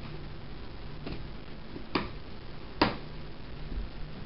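Sharp plastic clicks of a snap-on plastic enclosure lid being prised loose: a faint click about a second in, then two louder clicks under a second apart.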